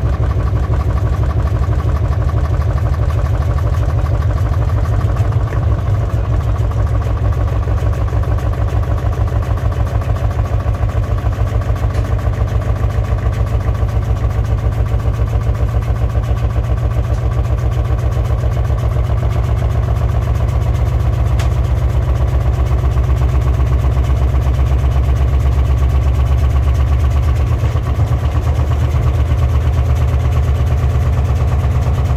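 Beko AquaTech front-loading washing machine running with a heavy hoodie inside: a steady low rumble that throbs rhythmically with the turning drum.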